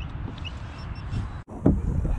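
Wind rumbling on an action camera's microphone, with handling noise as the camera on its kayak mount is gripped and moved. The sound drops out briefly about one and a half seconds in, and a loud knock follows.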